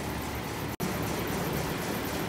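Greenhouse ventilation fans running, a steady even rushing noise, which drops out for an instant about a second in.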